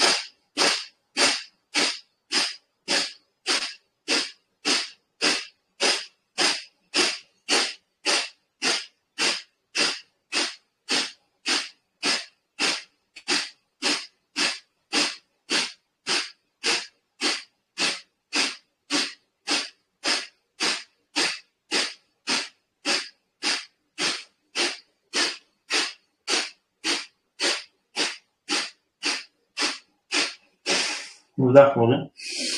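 Kapalabhati breathing: a long, even run of sharp, forceful exhalations through the nose, a little under two a second, each a short hiss of air driven out by a snap of the belly wall.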